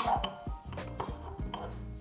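Wooden pieces of a Euklid for Nick packing puzzle knocking and clicking against each other and the wooden tray as they are shifted and lifted out, a few light knocks spread through the moment.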